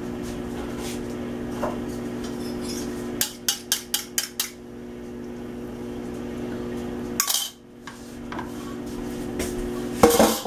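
A metal fork clinking against a bowl in a quick run of about seven sharp strikes, as egg is worked out of the bowl into a frying pan, over a steady low hum. A short scraping burst comes about seven seconds in.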